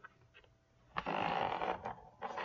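A woman's long breathy sigh: one unvoiced exhale starting about a second in and lasting about a second.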